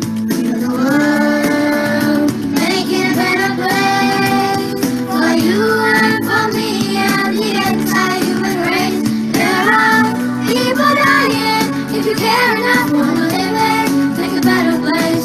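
A group of children singing a song together, with instrumental accompaniment.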